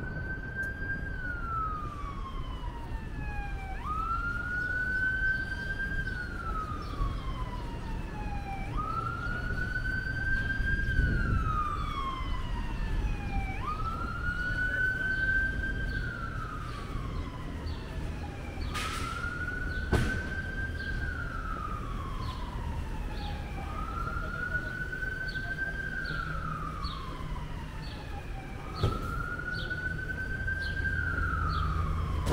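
Emergency vehicle siren wailing in slow, even cycles about every five seconds: each rises quickly, holds, then slides down, over a low rumble of city traffic. A sharp knock sounds about two-thirds of the way through, and a smaller one near the end.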